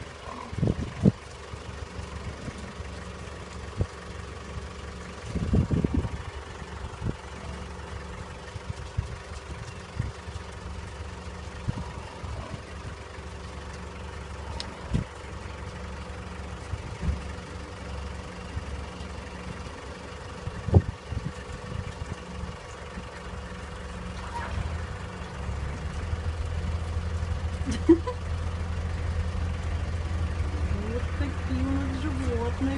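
Steady low hum of an idling car engine, growing louder over the last few seconds, with scattered short knocks and clicks.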